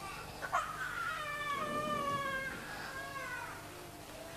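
A high-pitched, drawn-out vocal cry in two long notes, each falling slightly in pitch, after a couple of short clicks.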